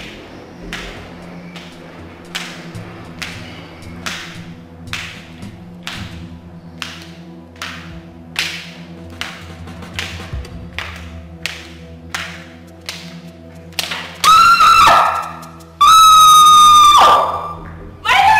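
Suspense film score: a low sustained drone with a sharp tap about every 0.8 s. Near the end a woman screams twice, loud and drawn out, as she falls on a staircase.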